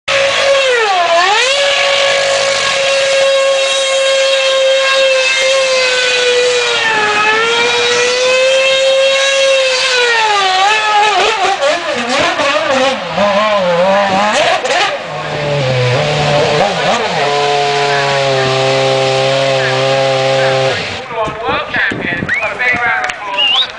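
McLaren Formula 1 car's engine running at high, steady revs through donuts, with tyre squeal. The pitch dips sharply as the throttle is lifted, about a second in and again twice more. The note then wavers, settles to a lower steady note and cuts off shortly before the end.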